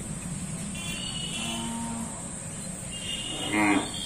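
Hallikar cattle mooing at a low level, with a short louder call near the end.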